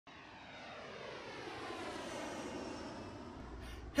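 Jet airliner engine noise: a hum with a stack of whining tones that slowly shift in pitch, growing louder and then easing off before it cuts off abruptly near the end.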